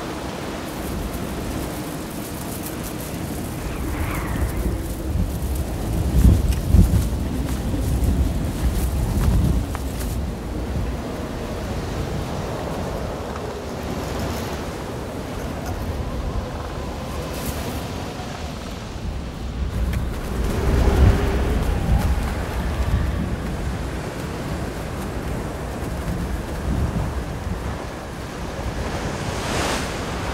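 Film soundtrack of strong wind gusting through palm trees over surf washing on a beach, swelling loudest about six to ten seconds in and again around twenty seconds in. The wind has shifted to blow from the shore out to sea, the cue to launch the raft.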